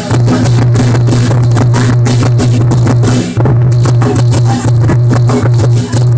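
Chinese lion dance percussion: a big drum beaten in a fast, continuous roll with clashing cymbals, loud throughout, with a brief break a little past halfway.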